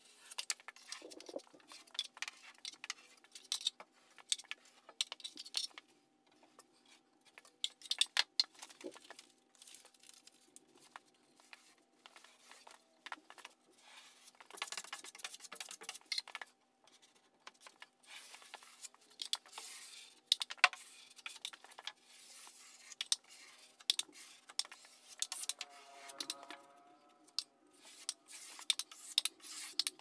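Steel taping knife scraping joint compound along a drywall corner joint and against a metal mud pan: irregular short scrapes and sharp clicks.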